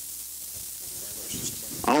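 Steady faint hiss of outdoor background noise in a pause in speech, with faint voices in the distance and a voice starting to speak near the end.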